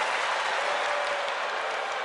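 Arena audience applauding and cheering, a steady wash of noise that slowly dies down.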